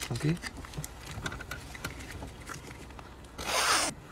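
A man sniffing cocaine up one nostril: one short, hissing snort of about half a second near the end, after a few faint clicks. It is too weak for the sniffer's companion, who at once calls for a harder inhale.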